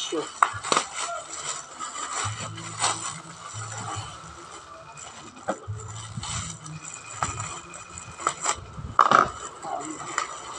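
Black plastic parcel wrapping crinkling and rustling as it is handled and pulled open by hand, with sharp crackles throughout. The loudest crackle comes about nine seconds in.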